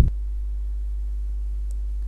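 A steady low-pitched hum, unchanging throughout.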